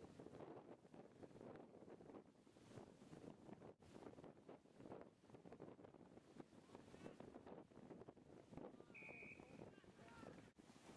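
Faint wind buffeting the camera microphone, with a short high whistle blast about nine seconds in.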